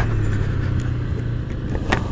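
Honda CB300's single-cylinder four-stroke engine running with a steady low hum that dies away about a second and a half in as the engine stalls.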